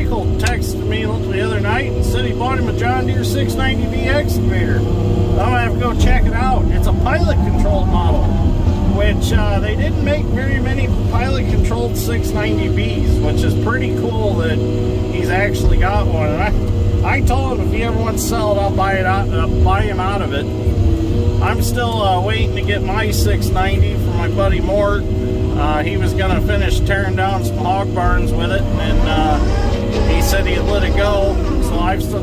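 Diesel engine of a Timberjack 608B feller buncher running steadily, heard from inside its cab as the saw head works through brush. A voice-like sound that cannot be made out runs over it, with scattered sharp clicks.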